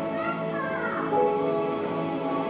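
Slow live worship-band music: long held chords, with a voice gliding through drawn-out notes over them.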